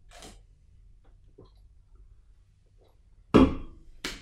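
Quiet room tone, then a single sudden thump about three seconds in, fading over half a second, as the aluminium energy-drink can is lowered and set down.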